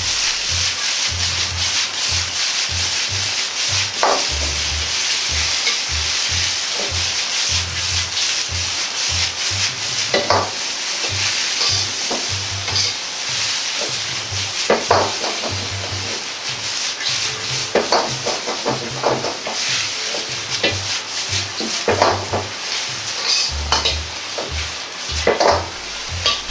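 Cabbage and fried tofu sizzling in a hot wok over a gas flame as they are stir-fried. The ladle scrapes and knocks against the wok every few seconds while the food is stirred and tossed.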